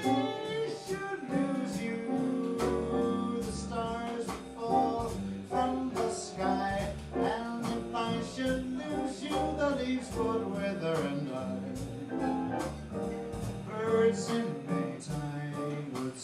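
Live jazz combo of tenor saxophone, piano, double bass and drums playing an instrumental passage: a bending melodic lead line over a plucked bass line and regular cymbal strokes.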